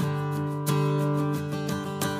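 Background music: acoustic guitar strumming chords, with a strong strum about every 0.7 seconds.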